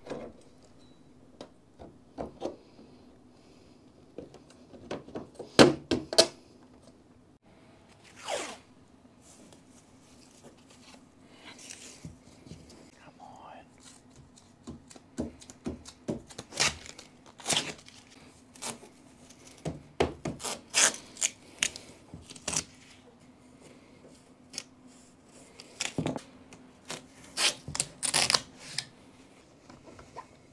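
Hands-on work on a soft-top's metal rail and fabric: irregular knocks, scrapes and rubbing, and the rip of painter's tape being peeled off and torn, over a steady low hum.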